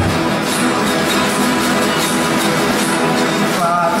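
Many guitars played at once by a huge crowd of guitarists, a dense, steady mass of sound.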